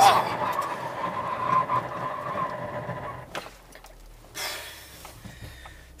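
Cabin sound of a Chevrolet Tornado pickup with its 1.8-litre four-cylinder engine just off a full-throttle run: engine and road noise with a steady whine, which fade away about three seconds in, leaving the cabin much quieter. A brief rush of noise comes a little past the middle.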